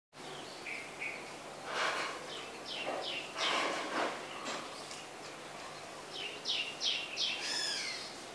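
Birds calling, with short sharp falling chirps scattered through, four in quick succession near the end, over steady background noise.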